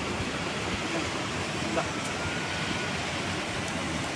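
A steady rushing hiss of outdoor noise, even and unbroken, with faint murmurs beneath it.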